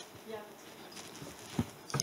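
A single spoken "ja" over the quiet room tone of a hall, then two short knocks near the end.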